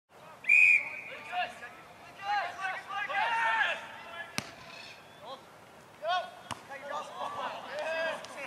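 A short, loud whistle blast near the start, then shouting voices of players and spectators. A sharp thud of a boot kicking the Australian rules football comes a little after four seconds in, and a second sharp impact follows about two seconds later.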